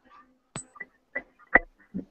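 A few short, sharp clicks, about four in two seconds, with faint murmurs between, heard over an online video-call line.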